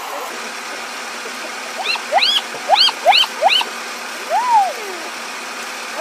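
Spotted hyenas calling: about five short calls that rise and fall in pitch, packed into a couple of seconds from about two seconds in, then one longer rising-and-falling whine, over a steady hiss.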